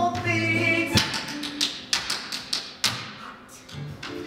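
Tap shoes striking the stage floor in a solo tap routine: a run of sharp, irregular taps from about a second in, over the show's accompaniment music, which holds long notes at the start.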